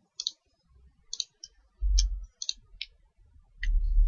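Computer mouse buttons clicking, about seven or eight short, sharp clicks at irregular spacing, as material and tool selections are made in a 3D modelling program. A low, dull thump about two seconds in and another low rumble near the end are the loudest sounds.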